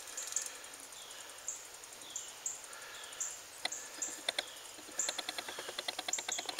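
Outdoor ambience: insects chirping in short high-pitched pulses, with a few falling bird whistles. A run of quick clicks comes in during the second half.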